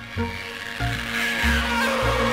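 Background music: a song with a pulsing bass line under a steady held note.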